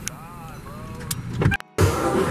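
Car cabin road noise with faint voices, broken by a brief dropout about a second and a half in, followed by the busier noise of a restaurant dining room.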